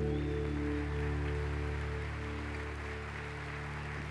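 The last chord of a live acoustic guitar song ringing out and slowly fading, with a faint hiss above it.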